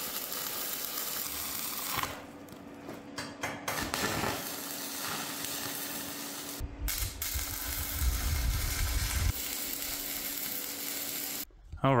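Electric welding arc crackling and sizzling through a few separate tack-weld runs on steel, stopping briefly twice between them. A low rumble sits under the arc for a couple of seconds past the middle.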